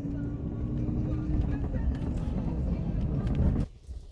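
Low, steady rumble of a moving passenger vehicle heard from inside its cabin, with a steady hum over it for the first second or so. The sound cuts off suddenly near the end.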